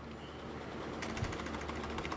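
Computer keyboard keys clicking faintly as code is typed, over a steady low background hum.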